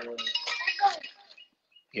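Plastic bags of small RC parts rustling and clinking as a hand handles them, after the tail of a voice at the start; the sound stops about a second and a half in.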